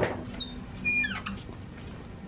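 A small bird chirping: a few quick high chirps, then a short call that falls in pitch about a second in, over a faint steady hum.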